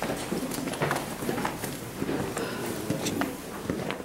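Footsteps of several people walking on a bare rock floor: irregular hard clicks and scuffs of shoes.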